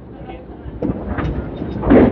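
Candlepin ball rolling back along the lane's ball return track: a rumble with clicks that builds from about a second in and is loudest near the end.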